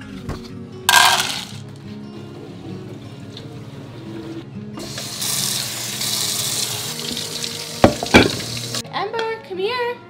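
Dry dog kibble rattling into a plastic bowl in a short burst about a second in, then a kitchen tap running water into the bowl of kibble for about four seconds, with two sharp knocks near the end of the running water. Background music plays throughout.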